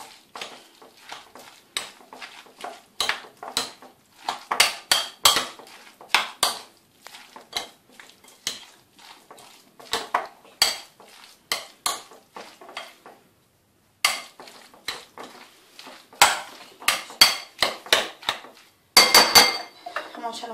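Spoon clinking and scraping against a glass bowl while a chopped seafood salad with salsa rosa is stirred: irregular clicks and scrapes, with a brief silent break about two-thirds of the way through.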